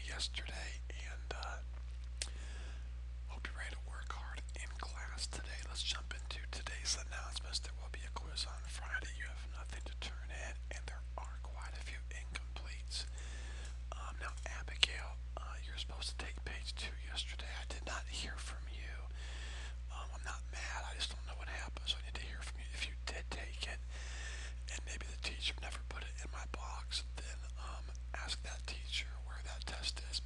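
Faint, unintelligible whispering and quiet talk from several voices, over a steady low hum.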